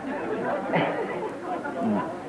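Indistinct chatter of several overlapping voices in a room, with no clear words.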